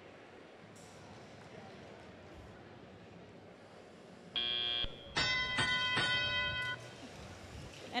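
FRC field buzzer sounds for about half a second, marking the end of the autonomous period. Then bell tones strike three times in quick succession and ring on, signalling the start of teleoperated play. Faint hall noise sits underneath.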